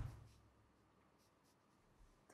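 Near silence, after a short breath sound, a laughing exhale, right at the start that fades within a moment.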